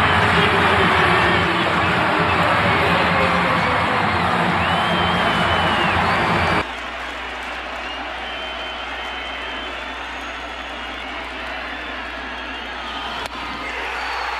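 A large stadium crowd cheering loudly and steadily. About six and a half seconds in it cuts off abruptly to a quieter, steady crowd murmur.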